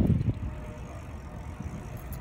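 Low rumbling wind and movement noise on a handheld phone's microphone, strong at first and settling about half a second in to a quieter, steady rumble.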